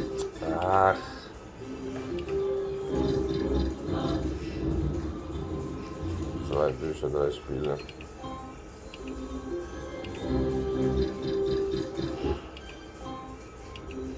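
Novoline Book of Ra Fixed slot machine playing its free-spin music: a melody of held electronic notes while the reels spin and a winning line pays out. Short wavering, voice-like sounds come in twice, about a second in and again past the middle.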